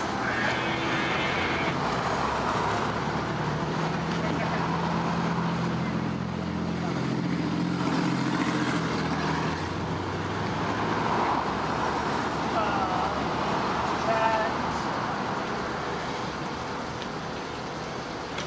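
Road traffic running past, with a vehicle engine humming steadily for several seconds in the middle, under indistinct talking.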